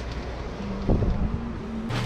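Low steady rumble of microphone noise with a single dull thump about a second in.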